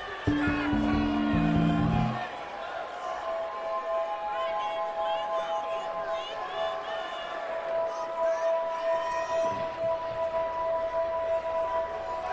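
Live rock band on stage: a loud descending bass run of four notes in the first two seconds, then a sustained chord of steady held tones, over audience cheering and whistles.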